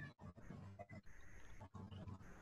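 Near silence: a faint low hum on a video-call line, cutting out briefly a few times.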